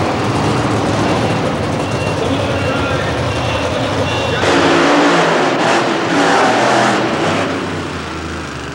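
Monster truck engine running with a low rumble, turning louder and harsher about halfway through, then easing off near the end.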